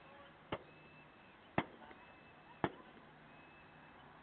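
Three sharp knocks, evenly spaced about a second apart, the middle one loudest, over a faint outdoor background with a thin high chirp that recurs between them.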